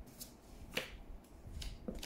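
Oracle cards being handled and laid out: a few quiet, sharp clicks and taps of card stock, the loudest about a second in and two more close together near the end.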